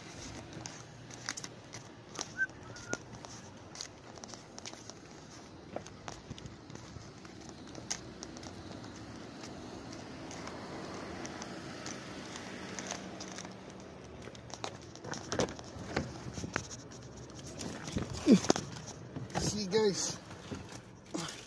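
Footsteps on asphalt and clicks of a handheld phone while walking, over a faint steady hum. Near the end come louder knocks and rustling as someone gets into a car.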